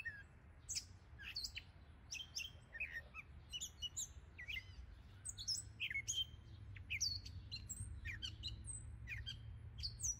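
Songbirds chirping: many short, high, quick chirps and calls, several in quick succession, over a steady low rumble.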